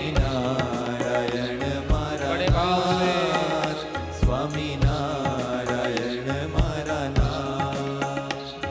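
Indian devotional music: a wavering melody over a steady drone, with low drum strokes that come in pairs every second or two.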